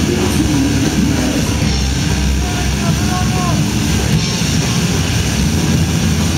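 Hardcore punk band playing live, loud and dense, with the singer shouting into the microphone over guitars and drums.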